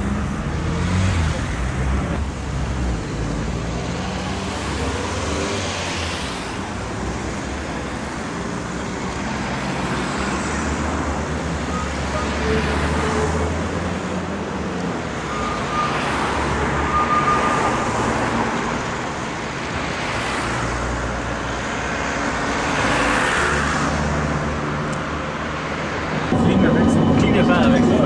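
Road traffic: cars passing one after another with a low engine hum, the noise swelling and fading every few seconds. Near the end it gives way to a louder, steady hum.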